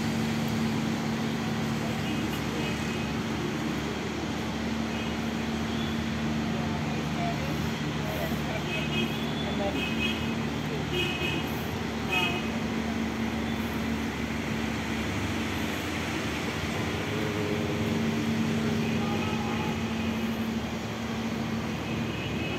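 A steady low engine hum over a continuous wash of outdoor traffic noise, with people talking in the background.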